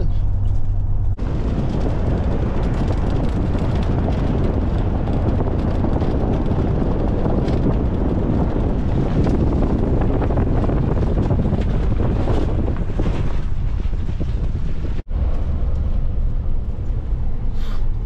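Vehicle running, heard as a steady low drone from inside the cab, broken by a cut about a second in to a long stretch of loud, rough rushing noise. The rushing stops suddenly about three seconds before the end, and the steady drone inside the cab returns.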